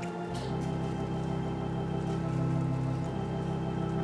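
Organ playing soft sustained chords beneath a prayer, the held notes changing chord a couple of times.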